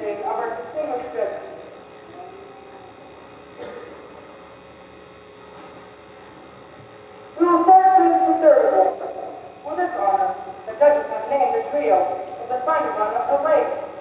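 A man's voice over a hand-held microphone and PA, in two stretches: briefly at the start, then again from about halfway through, with a few seconds of steady low hum in between.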